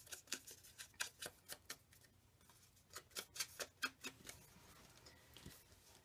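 Soft, irregular tapping and paper handling as an ink pad is dabbed and rubbed along the edges of paper cutouts and cards.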